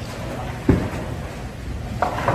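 Bowling alley din: a steady low rumble of balls rolling down the lanes, with one heavy thud a little under a second in.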